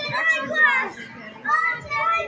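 A child's high-pitched voice talking, with a short break about a second in.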